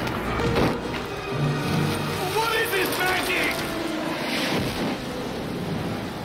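A man's voice crying out without words, over background film music, with a sudden noisy hit about half a second in.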